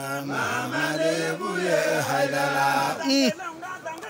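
A group of men chanting together in long held notes that step up and down in pitch. About three seconds in, one voice slides sharply downward.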